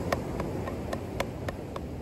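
Wooden drumsticks tapping a drum practice pad in a slow, even paradiddle, about four strokes a second, with the stroke on each downbeat accented.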